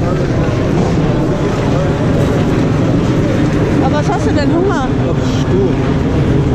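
A loud, steady low rumble with people's voices talking in the background, briefly clearer about two-thirds of the way in.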